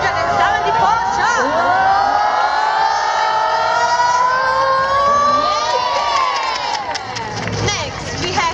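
A large crowd cheering and screaming, many voices overlapping with several long held screams; it eases off a little near the end.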